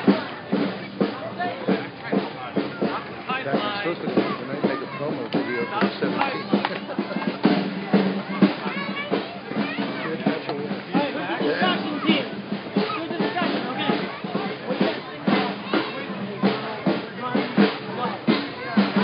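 Drumming with frequent hits, with many voices around it.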